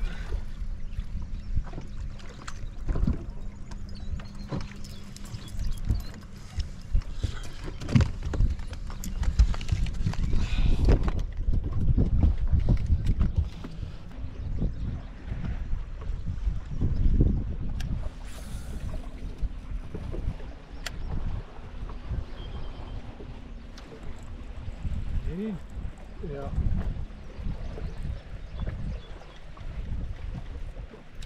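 Wind buffeting the microphone and water slapping against a fishing boat's hull, in uneven gusts, with a faint steady low hum underneath and occasional small knocks.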